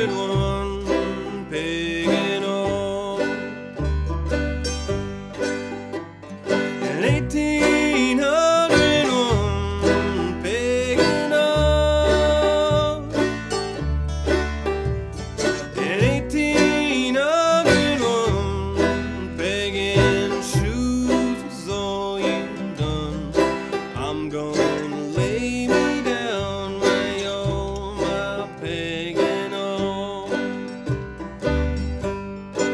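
Old-time string band playing an up-tempo tune: banjo lead over acoustic guitar, mandolin and an upright bass plucking a steady low line.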